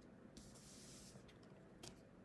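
Faint swish of tarot cards sliding against each other as they are handled, followed by a couple of soft clicks near the end.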